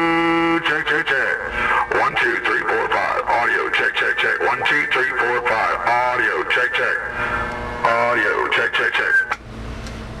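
A man's voice making drawn-out, wordless audio-test sounds into the microphone of a 10-meter transceiver being tuned up. It opens with a held, steady-pitched sound, then slides up and down, and drops away about nine seconds in.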